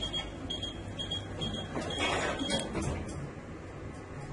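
A high electronic beep repeated about twice a second, six beeps in all, with a brief rush of noise around the middle.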